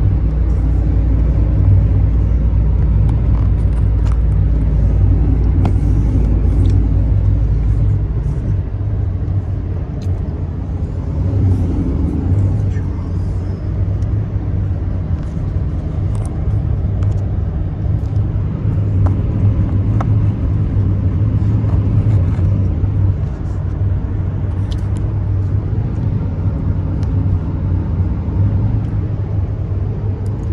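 Inside the cab of a pickup truck cruising at highway speed: a steady engine drone and road rumble. The deepest part of the rumble eases about eight seconds in.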